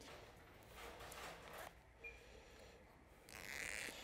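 Faint rasping of a zipper slider being worked onto the end of a coil zipper and run along it, in two short stretches, with a small click about two seconds in.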